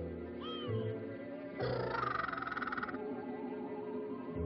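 Orchestral film score with held low chords. A short high swooping glide comes about half a second in, and a shimmering tremolo swells from about a second and a half to three seconds.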